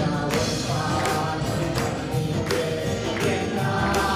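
Live worship band playing a Tamil gospel song, with a male lead singer on microphone over keyboards and a drum kit keeping a steady beat.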